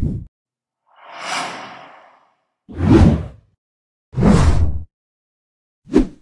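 Whoosh sound effects from an animated subscribe-button end card. There is a short low hit, then a softer whoosh that swells and fades about a second in, then two louder, heavier whooshes about three and four and a half seconds in, and another short hit at the end.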